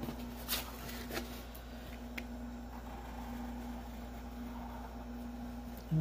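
Faint handling sounds of a Sharpie marker and a sheet of paper: a few soft ticks and rubs in the first couple of seconds, over a steady low electrical hum.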